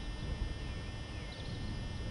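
Open-air ambience: wind rumbling unevenly on the microphone, with a few faint bird chirps about two-thirds of the way in.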